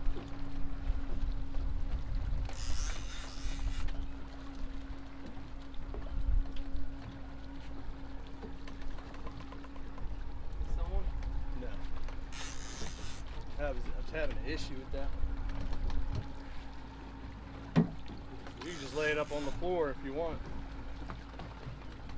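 Twin outboard engines running steadily under way, a constant hum over a low rumble of wind and water. Three short bursts of high hiss come through it, a few seconds apart.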